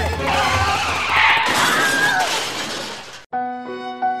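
A loud crash-and-shatter sound effect, a long hiss of breaking noise that cuts off suddenly about three seconds in, giving way to slow, sad bowed-string music.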